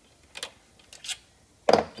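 Hand ratchet on a socket extension loosening a 10 mm valve-body bolt of a 4L60E transmission: a few sparse ratchet clicks, then a louder metallic clack near the end.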